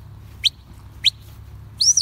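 A handler's whistled sheepdog commands: two short whistle notes and then a longer note that rises and falls near the end, the loudest of the three.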